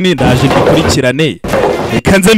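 A man's voice speaking in short bits, broken by two loud, rough bursts of noise of about a second each.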